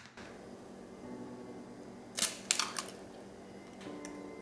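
A hen's egg cracked on the glass mixing bowl: a quick cluster of three or four sharp taps and shell cracks a little over two seconds in.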